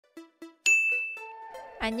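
A short edited-in chime jingle: two soft notes, then a bright ding that rings and fades slowly, with a few lower notes beneath. A woman's voice begins speaking near the end.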